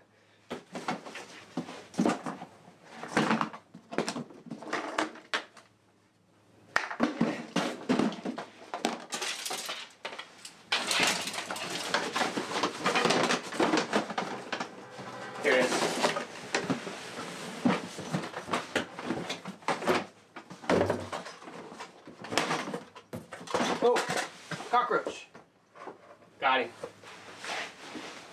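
Rummaging through boxes of old fishing gear: irregular clatter, knocks and rustling as plastic tackle boxes, rods and other tackle are shifted and searched, with a short lull about six seconds in.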